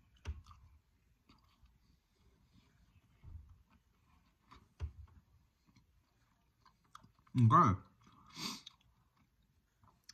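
A person eating a spoonful of chocolate chip dough ice cream: faint chewing with small mouth clicks, then a loud short vocal sound about seven and a half seconds in and a fainter one just after.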